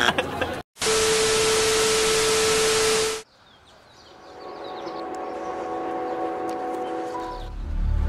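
Edited-in sound effects: a buzzer-like tone cuts off within the first half-second, then about two and a half seconds of loud static-like hiss with a steady low tone under it, stopping abruptly. A soft sustained chord then fades in, and music with a beat starts near the end.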